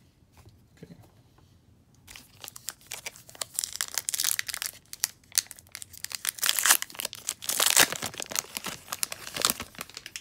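Foil baseball card pack wrapper being torn open and crinkled by hand: a run of crackling tears that starts about two seconds in and is loudest near the end.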